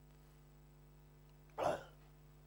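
Steady low electrical hum of the recording. About one and a half seconds in, a man's voice gives a single short vocal sound, a yelp or gulp, lasting about a quarter second.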